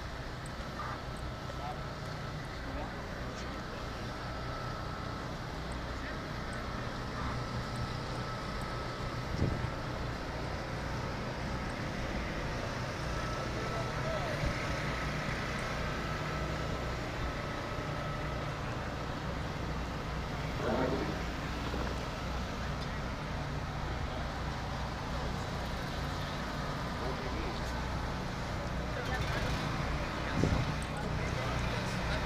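Busy outdoor ambience: scattered background voices over a steady low rumble, with no single loud event.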